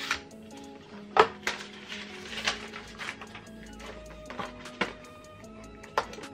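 Background music, with a few sharp, irregular cardboard clicks and snaps as a long cardboard watch-band box is pulled open and handled. The loudest snap comes about a second in.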